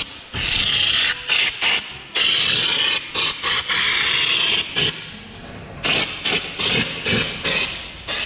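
Compressed-air undercoating gun spraying rubberized underbody protective coating onto a car body's underside: a hissing spray in long passes and short trigger bursts, with a brief lull about five seconds in.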